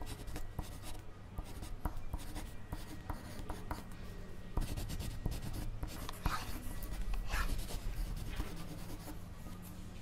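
Pencil writing on paper: irregular short scratchy strokes and light taps.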